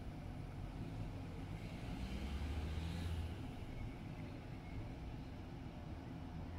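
Diesel air heater starting up on a drained battery reading about 8.6 volts: a steady low hum from its fan, swelling about two seconds in and easing off a second later.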